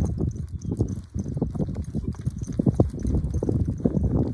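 Hoofbeats of Thoroughbred racehorses under riders on a dirt training track, a rapid, irregular run of thuds as they pass close by.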